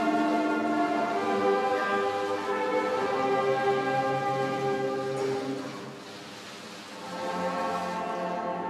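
Slow orchestral music in sustained, held chords. It fades down about six seconds in, then swells back up.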